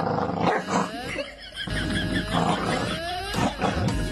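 A corgi growling in a run of uneven grumbles, some rising in pitch, with a rope toy clamped in its mouth.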